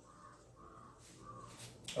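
Faint strokes of a marker pen writing on a whiteboard, a short scratchy squeak about every half second.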